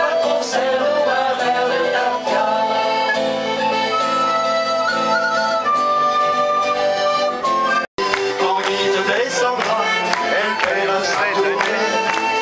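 Live traditional folk music led by an accordion playing a tune. The sound drops out for an instant nearly eight seconds in, then the music carries on.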